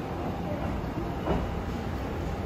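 Kintetsu electric express train pulling out of the platform and moving away: a steady low sound of wheels and motors, with one brief louder sound just past halfway.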